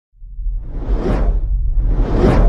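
Whoosh sound effect of a video intro transition: a rushing swell that builds to a peak about halfway through and falls away, over a steady deep rumble.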